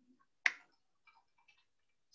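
Computer keyboard typing: one sharp key click about half a second in, then a few faint key taps.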